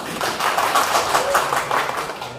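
Seated audience of a few dozen people applauding, a dense patter of many hands clapping at once.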